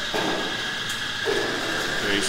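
Espresso machine at work: a steady hiss with a thin, high, steady whine running through it.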